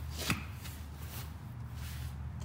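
A sharp click about a third of a second in, then a couple of fainter ticks, over a steady low hum.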